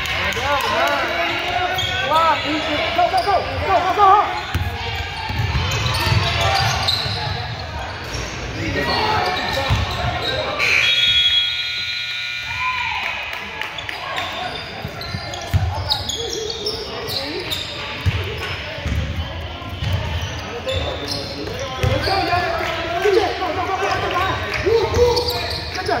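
A basketball bouncing on a hardwood gym floor during play, with repeated thumps, amid shouting voices of players and spectators in a large echoing gym.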